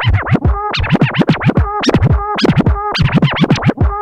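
Scratching on a DJ controller's jog wheel over a playing music track: quick back-and-forth pitch sweeps, about three a second.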